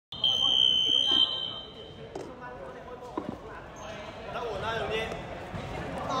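A steady high-pitched signal tone lasting about a second, like a referee's whistle or game horn, followed by a few sharp knocks of a basketball bouncing and players' voices in a large, echoing sports hall.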